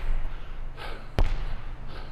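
A single basketball bounce on a hardwood gym floor, a sharp impact a little over a second in.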